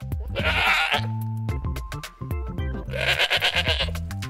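A goat bleating twice, each wavering call about a second long, over children's background music with a steady beat.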